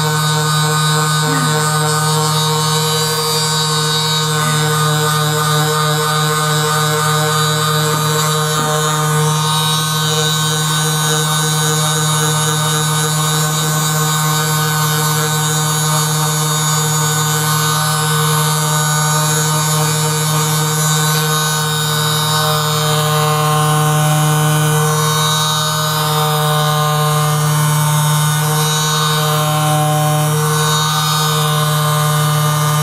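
Handheld percussion massage gun running continuously, a steady electric motor hum and buzz that holds its pitch, worked over the shoulders and upper back.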